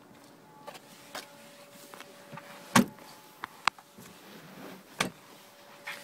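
A few sharp clicks and knocks from handling the car's rear door and interior, the loudest about three seconds in, over a faint steady hum.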